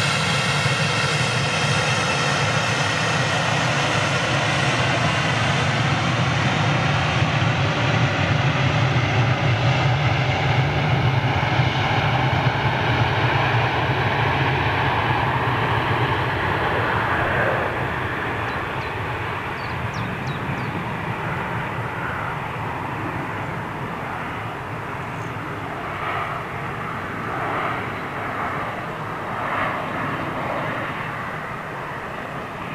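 Embraer 175 regional jet on its take-off roll, its twin GE CF34 turbofans at take-off power: a steady rumble with whining tones that slide down in pitch as it passes. The sound fades gradually from about halfway through as the jet lifts off and climbs away.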